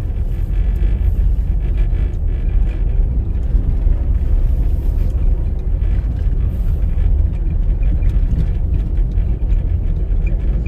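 Car driving along a snow-packed street: a steady low rumble of engine and tyres.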